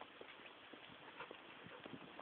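Faint footfalls of a person and a leashed dog walking on paving stones: light, irregular taps, several a second, over a low hiss.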